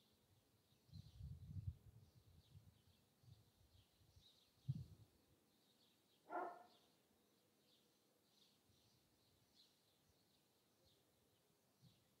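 Near silence in a garden, with faint bird chirps repeating throughout. A single short dog bark comes about six seconds in, and there is a brief low rumble about a second in.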